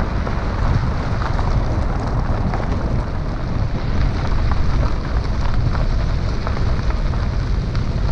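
Vehicle driving on a gravel road: tyres rumbling over the loose surface, with many small clicks of stones, and wind on an outside-mounted camera's microphone.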